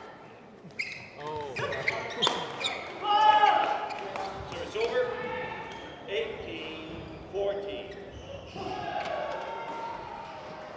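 Badminton rally in a large hall: sharp racket strikes on the shuttlecock and sneakers squeaking on the court mat in the first few seconds, with echoing voices through the rest.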